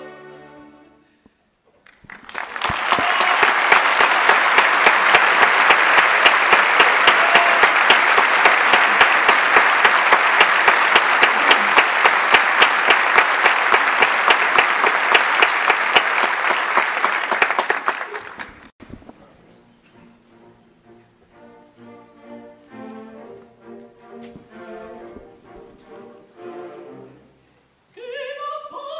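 An opera audience applauding loudly for about sixteen seconds after a soprano's sung phrase ends. The applause cuts off suddenly and a quiet orchestral passage follows.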